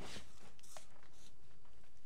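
Hands pushing seeds into potting soil in plastic buckets: a few short crunching rustles, the loudest right at the start and two more around the first second.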